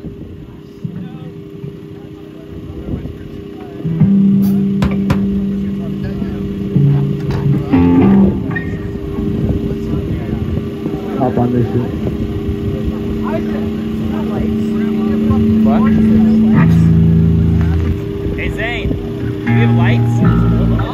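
Electric bass and guitar through amplifiers ringing out long held low notes that change pitch a few times, over a steady amp hum and crowd chatter. It is quieter for the first few seconds before the held notes come in.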